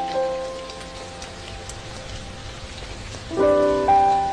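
Steady rain with soft music of long held notes, the soundtrack of a relaxing rain video. The notes fade and the rain carries on alone, until a new, louder chord comes in about three seconds in.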